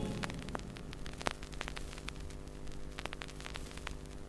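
Vinyl record surface noise in the silent groove between two tracks: scattered clicks and crackle over a steady low hum, with a few sharper pops about a second in and near three seconds.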